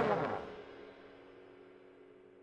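The last chord of a sampled tenor trombone section dies away within about half a second and leaves only a faint lingering tail. It is played dry, with the convolution location and ambience modelling switched off.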